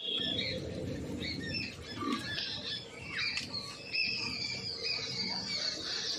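Small birds chirping and calling over and over, short high notes and brief glides, over a steady low outdoor background.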